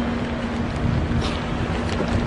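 Wind rumbling on a handheld camera's microphone over outdoor street noise, with a faint steady hum running underneath.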